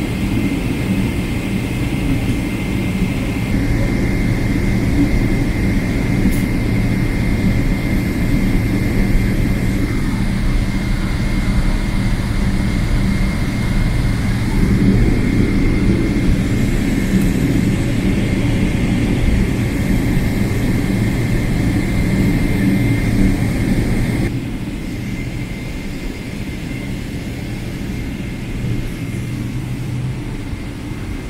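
Cabin noise of a Boeing 777-300ER taxiing, heard inside the cabin: its GE90 jet engines running at taxi power, a steady low rumble with a thin high whine over it. About 24 seconds in, the sound drops suddenly quieter.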